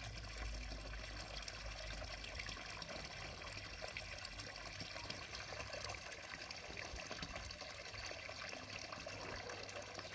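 Faint, steady trickle of water in a garden pond, with a low rumble during the first few seconds.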